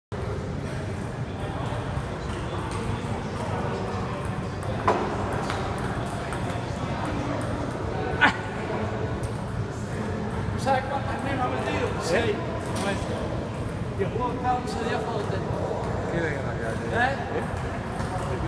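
Table tennis balls clicking off paddles and tables, with voices in the hall over a steady low background hum. Two sharper knocks stand out, about five and eight seconds in.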